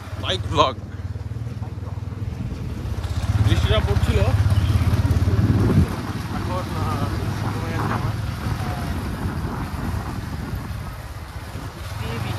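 Motorcycle engine running as the bike rides along, a low steady rumble that grows louder about three seconds in and drops back suddenly just before the six-second mark.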